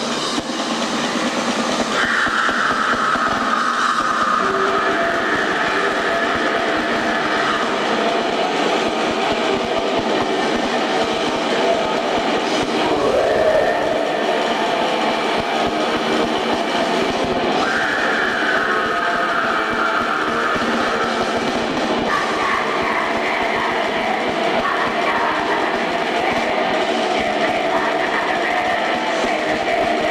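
Extreme metal band playing live at full volume: distorted guitars, drums and keyboards in one loud, continuous wall of sound. Held high lines rise over it about two seconds in and again from about eighteen seconds in.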